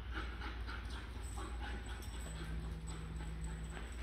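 Faint, irregular clicking of a German Shepherd puppy's claws, mixed with footsteps, on a bare concrete floor, several taps a second, over a steady low hum.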